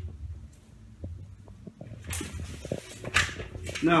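Shuffling footsteps and small knocks on a tile floor over a low steady hum, with two brief rustles in the second half.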